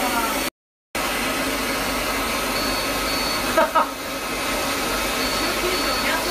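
Laser hair-removal machine's cooling blower running with a steady rush of air, broken by a brief dropout just after the start. A short separate sound comes about three and a half seconds in, and faint short high beeps sound now and then.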